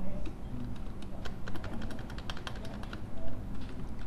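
Typing on a computer keyboard: a run of quick key clicks, densest in the middle.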